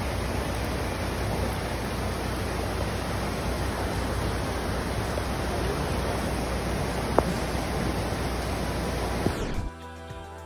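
Floodwater rushing over a flooded road crossing into a swollen river, a steady unbroken rush. It cuts off abruptly just before the end, giving way to quieter music.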